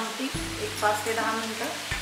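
Background music over a soft hiss of curry simmering in a steel kadhai over a gas flame.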